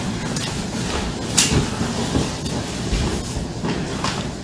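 Room background with small handling noises, a few light clicks and knocks, and one sharper click about a second and a half in.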